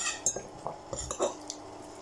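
Metal cutlery clicking and scraping against ceramic bowls while eating: a few light, separate clinks spread over two seconds.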